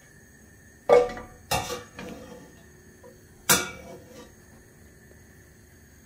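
A metal spoon strikes the inside of a stainless steel pot three times as lumps of coconut oil are knocked off it, each clink with a short metallic ring. The first two come about half a second apart, about a second in, and the third follows two seconds later.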